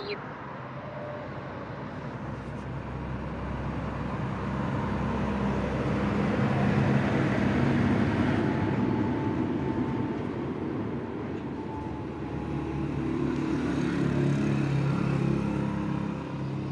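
Background road traffic: engine hum and road noise that swell to a peak about eight seconds in, fade, then rise again near the end, like vehicles passing.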